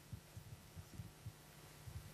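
Near silence: room tone with a few faint, soft low thumps scattered through it.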